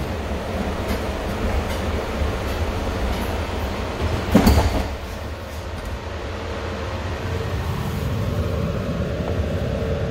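Steady low rumble and hum inside an automated airport people-mover train car, with one short louder noise about four and a half seconds in.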